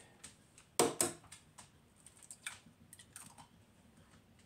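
Egg tapped against the rim of a ceramic bowl: two sharp cracks close together about a second in, then a few fainter clicks of eggshell being handled.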